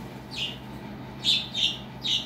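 A bird chirping: three short high chirps, the last two close together.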